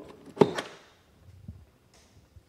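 A charging plug with a J1772-to-Tesla adapter is pushed home into a Tesla Model S charge port, seating with one sharp plastic click about half a second in, followed by a couple of faint low knocks.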